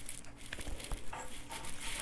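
Faint handling noise: nitrile-gloved hands working a welder's cable plug and its small cap, giving a few light clicks and rustles.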